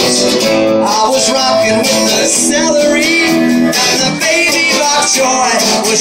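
Live song played on a strummed acoustic guitar, with a voice singing along.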